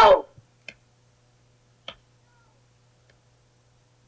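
A woman's short, high scream that falls in pitch, right at the start. Two faint clicks follow about a second apart over a low steady hum.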